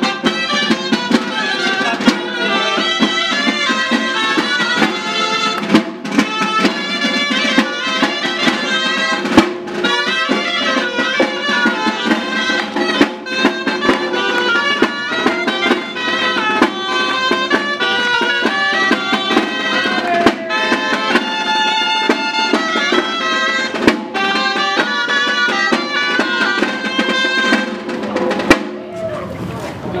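Loud traditional Catalan festival music for the giants' dance: a bright, shrill reed-pipe melody, typical of gralles, over a drum beat. The music stops shortly before the end.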